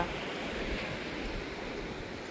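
Steady wash of sea surf, with some wind noise on the microphone.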